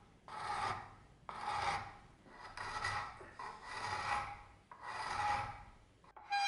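Hand file shaping a beech wood axe handle in a vise: five long rasping strokes, about one a second.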